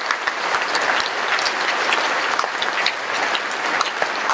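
Audience applauding: dense, steady clapping from a large crowd in response to the speaker's line.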